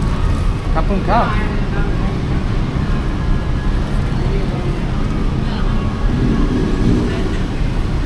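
Steady low rumble of road traffic and crowd hubbub, with a brief voice about a second in and faint talk later on.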